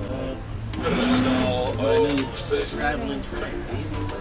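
Voices talking in a boat cabin, loudest about a second in, over the steady low hum of the canal boat's engine.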